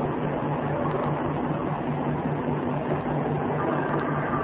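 Steady background hiss with a low hum that pulses evenly.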